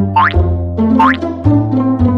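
Playful background music of short plucked notes over a bass line. Two quick upward-sliding, boing-like glides come in, one near the start and one about a second in.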